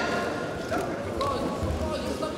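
Shouting voices in an echoing sports hall, with a few dull thuds from two fighters grappling and striking on a padded mat.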